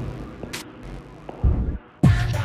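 A sparse break in an electronic synthesizer and drum-machine track: a short sharp click about half a second in and a deep drum-machine kick about one and a half seconds in, then a brief near-empty drop at the end.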